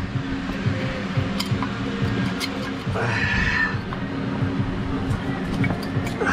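Scattered light metal clicks as brake pads are handled and fitted into a disc brake caliper, over steady background music. About three seconds in there is a brief, higher-pitched sound lasting under a second.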